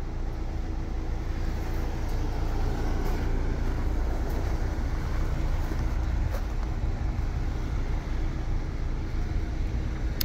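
Ford Bronco engine running as the SUV crawls up a steep sandy hill: a steady low rumble that builds slightly over the first few seconds.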